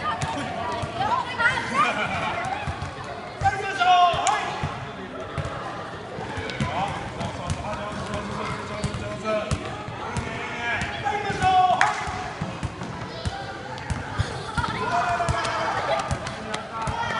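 Soccer balls being dribbled and kicked across a wooden gym floor, many short thuds in quick succession, with children's voices calling out over them.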